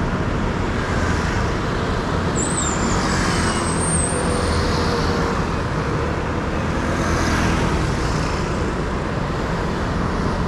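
Road traffic: cars and scooters passing, a steady rumble of engines and tyres.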